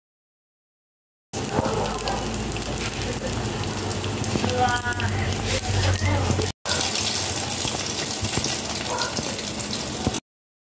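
Banana blossom fritter batter sizzling in hot oil in a pan: a steady crackling hiss that starts about a second in and breaks off briefly about halfway.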